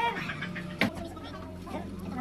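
A plastic spoon clicks once against a plastic food tub a little under a second in, over a steady low hum and faint background voices.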